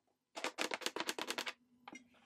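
A rapid run of about a dozen sharp clicks lasting about a second, starting a little way in, followed by one softer click near the end.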